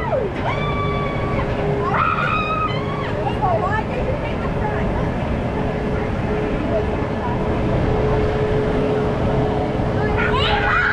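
Suspended looping coaster train climbing its lift hill: a steady rumble with a constant mechanical hum. Riders whoop and call out in high voices during the first three seconds.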